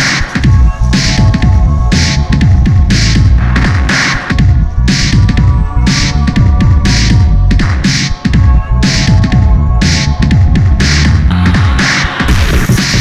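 Live electronic music: a heavy, throbbing bass line under a steady beat of noisy snare or hi-hat hits about twice a second.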